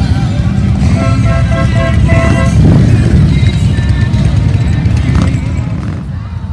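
Several motorcycle engines running as the bikes ride past in a group, a steady low rumble with music playing over it. The rumble fades near the end as the bikes move off.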